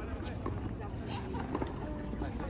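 Indistinct voices talking over a steady low rumble, with a few faint knocks.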